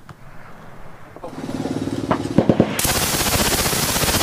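World War II-era MG42 machine gun firing. Rapid shots start about a second in and run together into one continuous burst, loudest in the last second or so.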